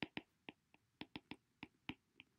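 Faint, irregular clicks of a stylus tip tapping on a tablet's glass screen during handwriting, about eight in two seconds.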